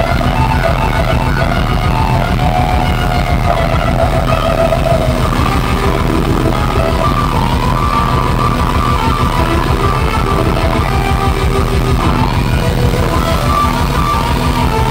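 Live hard-rock band playing loud: an electric guitar through Marshall amps plays a lead line of long, bending sustained notes over a fast, steady drum and bass pulse.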